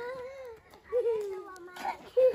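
A small child's voice crying out in two drawn-out wails, the second starting about a second in and sliding slightly lower in pitch.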